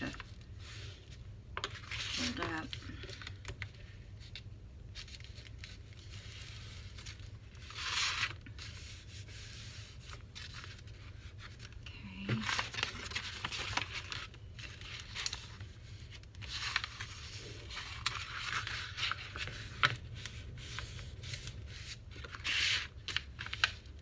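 A paper book dust jacket being folded, creased and smoothed by hand over a journal cover board, rustling and sliding in scattered bursts of paper noise.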